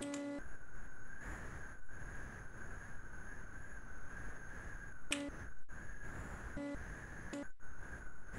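Steady background hiss and low rumble from open microphones on a video call, with a few brief pitched blips.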